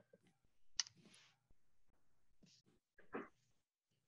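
Near silence with a few faint, brief clicks and small noises, the sharpest about a second in.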